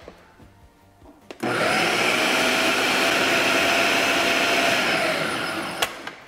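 Countertop food processor motor starting about a second and a half in and running steadily while it grinds cooked pork chicharrón and tomato into pupusa filling, then winding down near the end and ending with a click.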